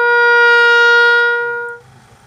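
Bugle call: one long, steady, loud held note that fades away near the end.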